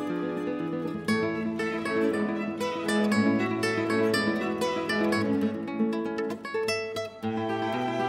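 Background music: an instrumental piece of plucked guitar, with notes picked out in quick succession.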